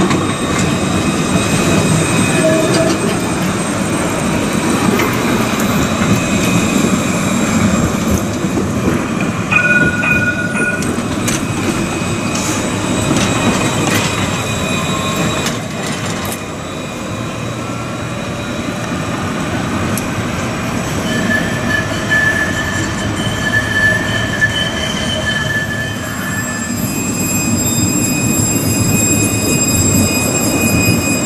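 Alstom Citadis low-floor tram running on street track, a steady rolling rumble with high-pitched wheel squeal on the curved rails: a short squeal about a third of the way in and a longer one a little past the middle.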